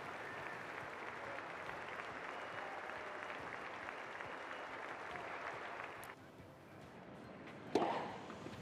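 Tennis stadium crowd applauding, a steady dense clapping that drops away suddenly about six seconds in, followed by a sharp knock near the end.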